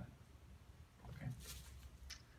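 A near-quiet room during a pause in the talk, with a faint, brief spoken word about a second in.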